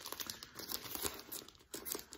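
Record sleeves rustling and crinkling as they are handled, an irregular run of small crackles.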